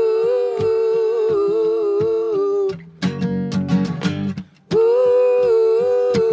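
Live folk song intro: a wordless hummed vocal melody in long held notes over guitar, with a steady beat underneath. The held notes break off for about two seconds in the middle, then resume.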